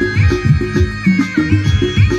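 Instrumental Nagpuri folk music from a stage orchestra: a high lead melody with pitch slides and held notes over a busy, steady drum-and-bass beat.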